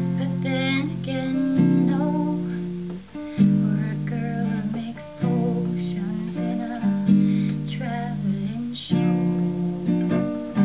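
Acoustic guitar strummed in slow, sustained chords, a new chord struck about every two seconds, with a young girl's solo singing voice over it.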